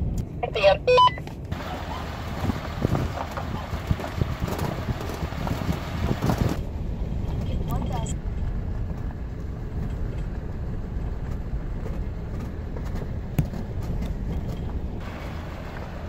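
Turbo Cummins diesel pickup driving on a gravel road, heard from inside the cab: a steady low engine and road rumble, with a brighter hiss of tyres on the gravel for the first several seconds that then drops away.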